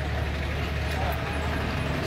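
A pause in speech filled by a steady low hum with an even background hiss.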